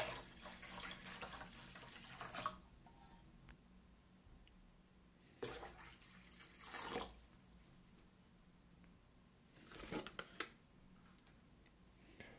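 Hot water poured from a jug into the empty stainless-steel tank of an ultrasonic cleaner, running and splashing in the tank. It comes in three pours: about two seconds at the start, again about five seconds in, and briefly near the end.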